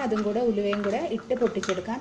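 Metal spoon stirring a thick chilli paste in a small glass bowl, scraping and giving a couple of sharp clinks against the glass, under a woman's continuous speech, which is the loudest sound.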